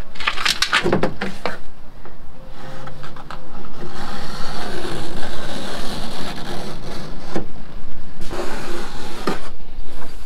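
Plywood panel knocking and rubbing against a plywood boat hull as it is pressed into place and marked with a pencil. There are a few knocks in the first second and more later, with a stretch of scratchy scraping in the middle.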